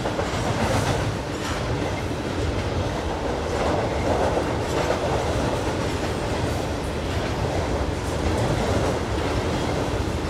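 Double-stack intermodal freight cars rolling across a girder bridge overhead: a steady rumble of steel wheels on rail with scattered wheel clacks.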